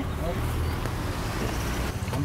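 Steady road traffic rumble and street noise, a low hum under an even wash of noise with no distinct events.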